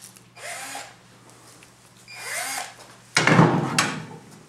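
Power drill whirring in two short bursts, its pitch spinning up and falling back each time, then a louder, harsher run near the end.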